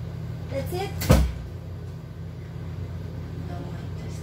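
A single sharp knock with a low thud about a second in, over a steady low hum.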